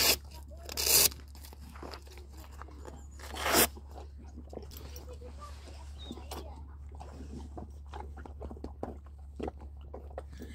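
A horse eating feed from a rubber feed bowl: steady, close chewing and crunching. Two louder rustling bursts, about a second in and about three and a half seconds in, come from its horse rug being handled and pulled off.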